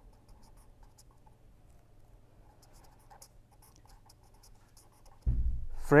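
A pen writing on paper in short, scratchy strokes, over a faint steady hum. Near the end a low thump is heard, louder than the writing.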